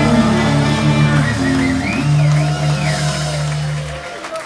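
Ska band playing live: sustained bass notes under guitar and drums, with a few arching high glides in the middle.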